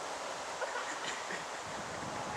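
Steady wind and rustling leaves, an even hiss with no clear single event.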